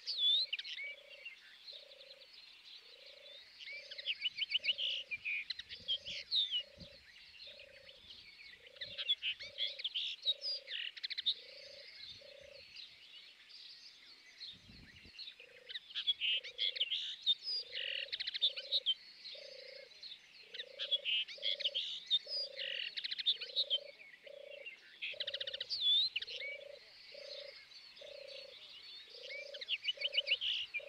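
Animal calls: busy high chirping and twittering over a steady, evenly spaced series of short low notes, about two a second and often in pairs, with a brief pause about halfway.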